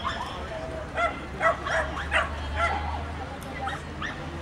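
A dog barking in a quick run of five or six short, high yips, starting about a second in.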